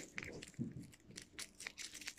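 Faint crinkling and scattered light clicks of a Kinder Surprise egg's wrapper and small plastic toy being handled.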